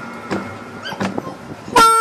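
Acoustic blues: an acoustic guitar rings quietly with a few light picked notes in a lull. Near the end a harmonica comes in loudly with a held chord.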